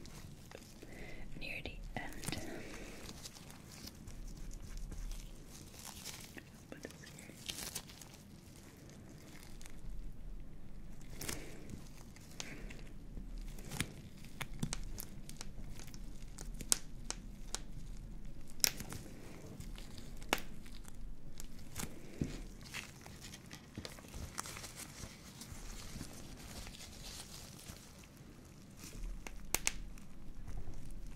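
Close-miked handling sounds: nitrile-gloved fingers squeezing and rubbing a silicone pimple-popping practice pad, and a paper tissue crinkling. Soft rubbing swells and fades, with scattered sharp clicks.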